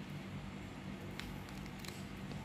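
Toy poodle chewing a small treat taken from the hand, heard as a few faint clicks and smacks over a low steady room hum.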